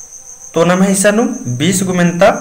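A man's voice speaks, starting about half a second in. Under it runs a steady, high-pitched, pulsing trill.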